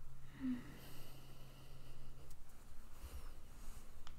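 A woman's brief, soft hum-like vocal sound about half a second in, then faint breathing and a few small ticks over a quiet, low, steady background hum.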